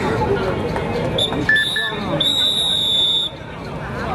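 Crowd noise and voices around a kabaddi court, with a whistle blowing: a few short blasts, then one longer steady blast of about a second.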